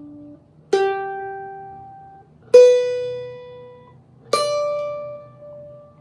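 Rozini student-model cavaquinho with its open G, B and high D strings plucked one at a time: three single notes, each higher than the last, each left to ring out and fade. The open strings are in tune.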